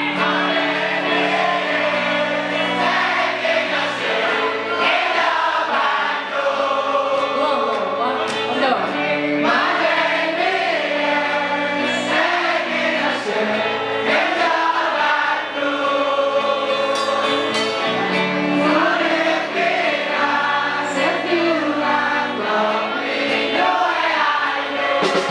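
Live band playing amplified guitar and bass while many voices sing along together loudly.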